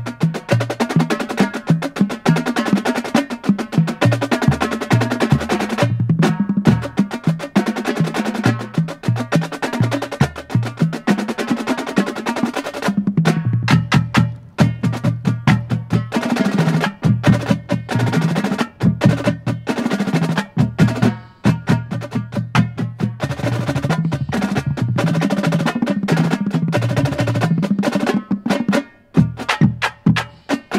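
Marching drumline (snare drums, tenor drums and tuned bass drums) playing a warm-up exercise together: dense rhythmic passages and rolls, with stepping pitched notes from the bass drums. There are brief breaks between phrases every seven or eight seconds.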